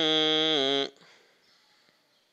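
A man's voice reciting the Quran in melodic style, holding one long vowel on a steady note with a slight waver. It cuts off about a second in, leaving near silence.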